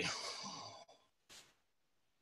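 A man's breathy exhale trailing off after speech and fading out over about the first second, then one brief faint puff of noise, with dead silence between.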